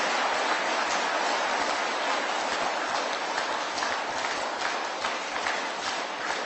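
Audience applause: many hands clapping steadily, easing off slightly near the end.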